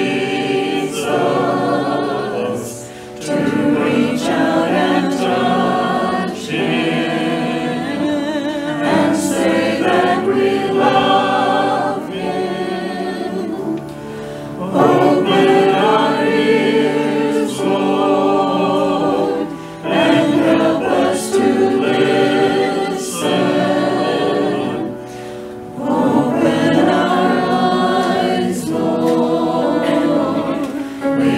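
Church choir of men and women singing a hymn in phrases, with short pauses between the lines.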